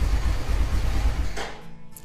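Motorcycle engine idling, then cutting out about one and a half seconds in as it is shut off remotely by a 'motor stop' command from a phone app through a Bluetooth relay module.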